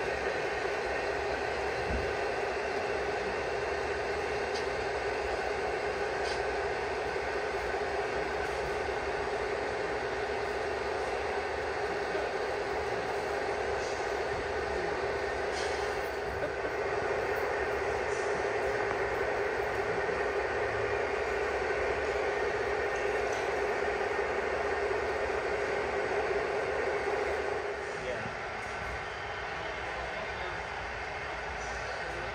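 Model coal train's hopper cars rolling steadily along the track, a continuous rumble with a constant hum, over background voices; it becomes quieter near the end.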